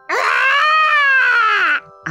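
A storyteller's voice acting out a baby's long wail, 'uwaaaah!', rising and then falling in pitch.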